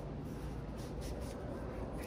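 Microfiber rag wiping and rubbing degreaser off a cordless power tool's body, with faint irregular scrubbing strokes.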